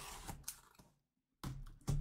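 Cardboard box being handled by gloved hands: two short bursts of scraping and tapping, the second about a second and a half in.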